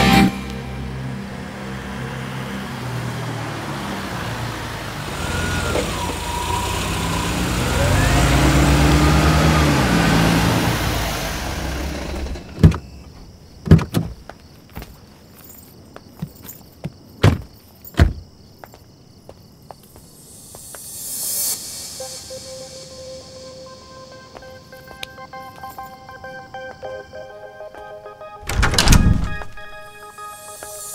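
Film soundtrack music for about the first twelve seconds, then four sharp thunks of car doors being shut over a quiet background. Faint held tones follow, and a brief loud swell comes near the end.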